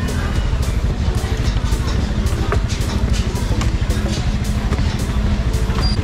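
Motor scooter engine running at low riding speed with wind buffeting the microphone, a steady low rumble, with music faintly underneath.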